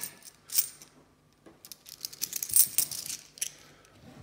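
A handful of cupronickel 50p coins clinking against each other as they are thumbed through by hand: a short clink about half a second in, then a quick run of clinks from about a second and a half in, loudest partway through.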